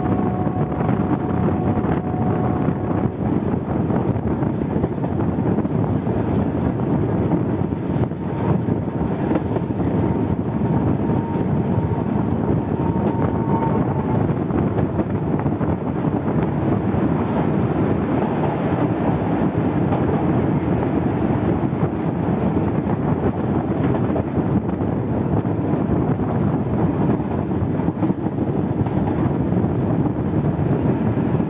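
Sri Lankan railcar T1 515 running along the track, heard from an open window: a steady rumble of wheels and engine with some wind across the microphone.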